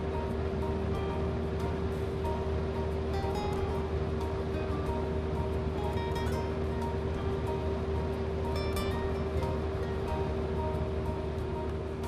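Background music over a steady hum from a commercial kitchen hood's exhaust fan, running at speed after being commanded to speed up.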